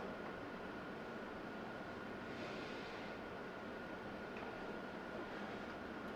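Quiet room tone: a steady hiss with a faint, thin, steady high tone over it, and no distinct event.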